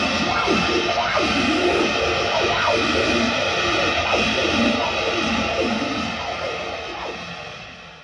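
A sheet of glass vibrated with the mouth and amplified through a contact microphone and effects, giving harsh noise music: a dense wash full of quick sliding squeals that rise and fall. It fades out over the last two seconds.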